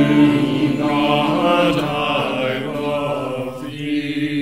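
A mixed choir of women's and men's voices, recorded separately and mixed together, singing slow sustained chords of a hymn-anthem, the sound thinning near the end.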